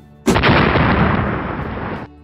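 Explosion sound effect: a sudden loud blast about a quarter of a second in, fading slowly over the next second and a half.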